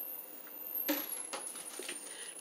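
Faint rustle and a few light knocks as an empty cardboard-backed bra package is tossed into a recycling bin.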